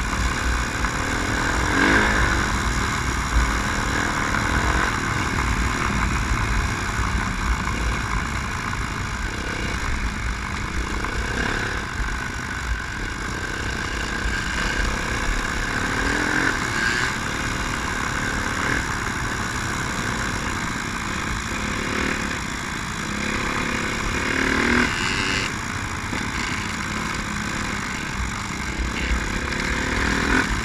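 Honda CRF four-stroke dirt bike engine running steadily as it rides along a gravel trail, heard from the rider's helmet camera with constant wind rush.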